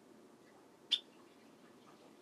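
A single short, sharp click about a second in, over faint steady room noise.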